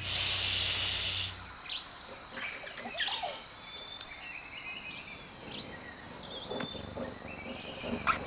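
A loud hiss lasting about a second, then faint chirping, insect- and bird-like, over a steady high thin tone.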